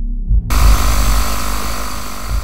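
Loud TV-static white-noise hiss cutting in suddenly about half a second in, over a low, throbbing bass beat.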